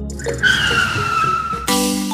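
Tire-squeal sound effect, a slowly falling whistle, laid over background music; near the end a short burst of hiss and a new music chord come in.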